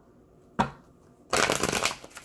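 Tarot cards being handled: a single sharp tap about half a second in, then a quick riffle of the deck lasting about half a second, made of many rapid crackling clicks.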